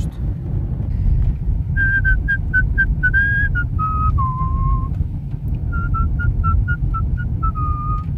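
A person whistling a short tune, starting about two seconds in: a run of clear notes stepping up and down. Under it is the steady low rumble of the car's engine and tyres inside the cabin.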